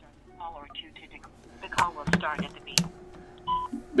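Telephone call coming through on a call-in line: faint voice traces, several sharp clicks in the middle, and a short electronic beep near the end as the call connects.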